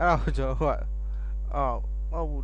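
Steady low electrical mains hum on the recording, with a man's voice speaking over it twice, briefly.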